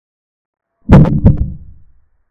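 Two heavy low thuds about a third of a second apart, starting about a second in and dying away over the next second: a dramatic sound effect laid over a chess move.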